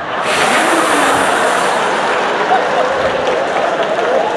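Audience applauding and laughing: a loud, steady wash of clapping that is brightest in its first couple of seconds.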